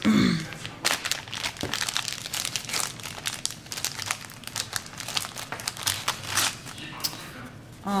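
A clear plastic zip-top bag crinkling and rustling as it is opened and a small notebook is pulled out of it, after a brief throat clearing at the start.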